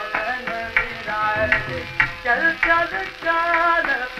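Hindustani classical vocal in raga Tilak Kamod: a male voice sings wavering, ornamented phrases over a steady drone, with tabla strokes, from an old archival recording.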